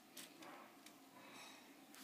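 Near silence: faint room hiss with a few soft clicks.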